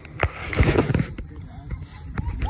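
A brief burst of rustle and low rumble on the phone's microphone, from about half a second to a second in, as the phone is handled and turned round.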